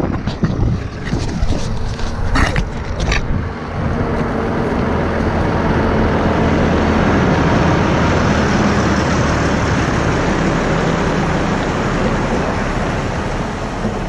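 A Volvo lorry pulling a bulk tanker trailer drives past on a gravel road: diesel engine and tyres crunching on gravel build up, are loudest about halfway through, then slowly fade. Before it arrives there is wind on the microphone and two sharp knocks.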